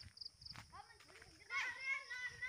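High-pitched vocal calls: a few short high chirps near the start, then a louder pitched call in the last half second.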